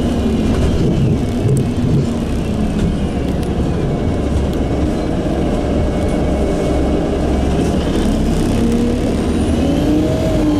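Bus engine and drivetrain heard from inside the bus as it moves slowly: its pitch drops over the first couple of seconds and climbs again near the end as the bus picks up speed, with a fainter high whine following the same fall and rise.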